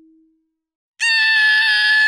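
A cartoon coronavirus character's high-pitched scream as it is jabbed with a syringe. It starts about a second in and holds loud and steady at one pitch.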